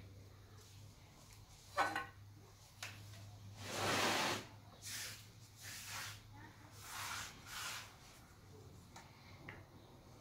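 Faint handling noises of hands working potting soil in a terracotta pot: a sharp click about two seconds in, a longer soft rustle around four seconds, then several short soft rustles, over a steady low hum.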